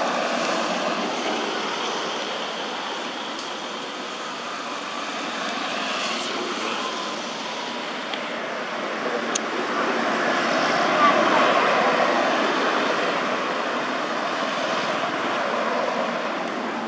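Steady background traffic noise from the road, swelling louder about two-thirds of the way through, with indistinct voices mixed in.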